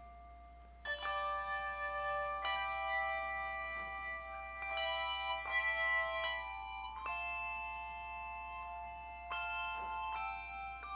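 Handbell choir ringing: chords are struck and left to ring together, a new chord entering every second or two after a brief hush at the start.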